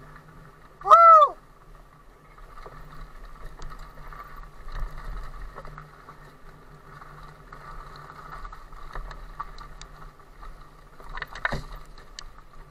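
Electric mountain bike ridden along a dirt trail: the mid-drive motor's steady whine under wavering tyre and rattle noise. About a second in, a short, loud, high-pitched squeal rises and falls in pitch, and a few sharp knocks come shortly before the end.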